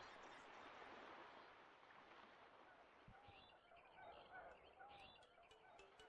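Near silence: faint steady background hiss that fades about halfway through, with a few faint, brief chirp-like sounds in the second half.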